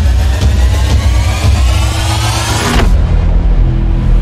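Cinematic intro sound effect: a rising whoosh whose pitch climbs over a heavy, pulsing bass, cutting off sharply about three seconds in and leaving a low bass drone.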